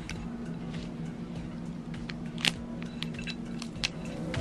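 Small clicks and scrapes of a metal-tipped weeding tool picking stencil backing off a glass coaster, the sharpest click about two and a half seconds in, over a steady low hum.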